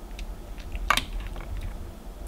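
Light tableware clicks from a toddler eating at a plastic divided plate, with one sharp tap about a second in.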